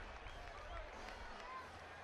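Baseball stadium crowd noise: a steady din of many voices.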